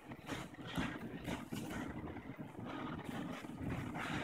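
Bare feet shuffling and scuffing on gym mats as two grapplers hand-fight standing and drive into a takedown, with a few soft knocks from footfalls and bodies colliding.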